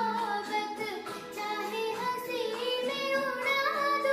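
A young girl singing a Hindi film song, a continuous melodic line with held, wavering notes.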